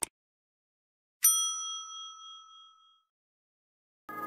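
A short click, then about a second later a single bright bell ding that rings out and fades over about a second and a half: the click-and-ding sound effect of a subscribe-button animation.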